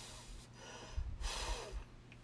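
A woman breathing close to the microphone: two audible breaths, one ending about half a second in and another about a second and a half in, with a few soft low bumps from her moving.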